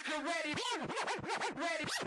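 Turntable scratching: a sound sample is dragged back and forth in quick rising-and-falling sweeps, about five a second, in an early hardcore DJ mix.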